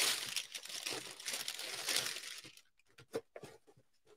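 Paper packing crinkling and rustling as a shoe is lifted out of its cardboard shoebox for about two and a half seconds, followed by a few light clicks.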